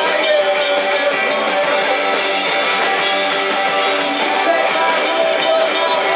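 A live rock band playing: an electric guitar with drums and frequent cymbal hits, loud and continuous.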